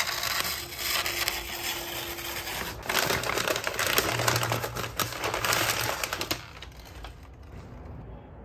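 Crinkling and rustling of a packaging wrapper as it is handled and crumpled by hand, a dense crackle that grows busier a few seconds in and stops about six seconds in.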